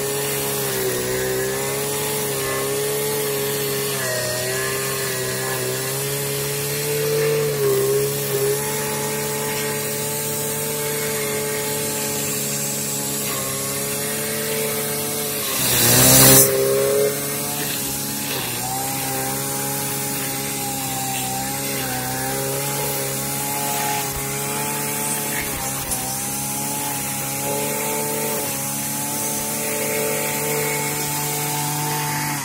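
Backpack petrol brush cutter running at high speed as it cuts grass, a steady engine note. About halfway through, a burst of louder noise comes and the engine note sags briefly before picking back up.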